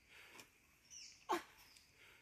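Two brief animal calls: a faint falling chirp about a second in, then a sharper, louder call a moment later.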